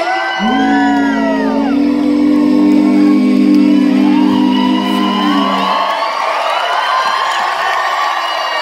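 A live rock band holds its final note with a sung line over it, and the note stops about six seconds in. A theatre crowd cheers and whoops as the song ends.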